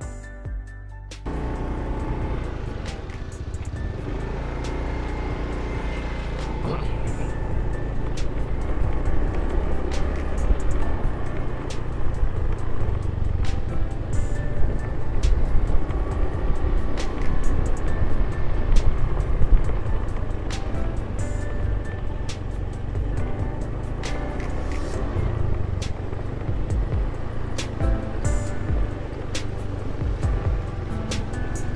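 Motorbike being ridden along a rough path: steady engine and wind rumble on the microphone, starting about a second in, with background music playing underneath.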